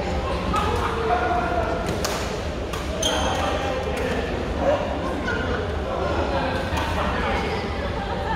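Badminton rackets striking a shuttlecock several times in a rally, sharp light hits around the middle, over steady background chatter of players in the hall.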